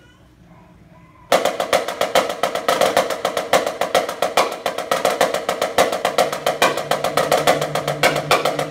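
Marching snare drum played solo: after about a second of quiet, a fast stream of sharp strokes starts suddenly and keeps on steadily. A low held note comes in beneath the drumming about two-thirds of the way through.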